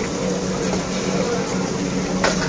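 Steady hum and rumble of a busy restaurant kitchen, with faint chatter from the waiting crowd underneath.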